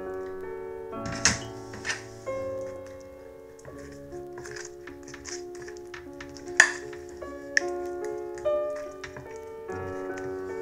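Soft piano music plays throughout, with a metal spoon clinking and scraping against a glass baking dish several times as tomato sauce is spread. The sharpest clink comes a little past the middle.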